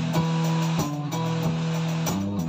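A band with two guitars and a drum kit playing: held guitar chords that change every half second or so, over steady drum and cymbal hits.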